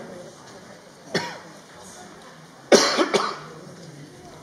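A person coughing: two or three coughs in quick succession about three seconds in, after a single shorter sharp sound about a second in, over a low murmur of people.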